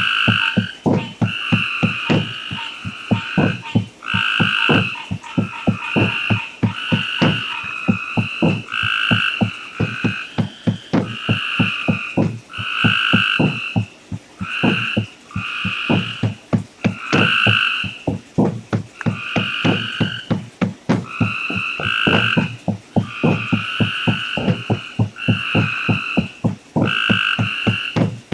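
Frogs calling in a chorus: a fast run of short croaks, several a second, under higher calls that repeat about once a second.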